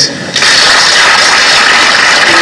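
An audience applauding, a loud, steady clapping that starts about half a second in.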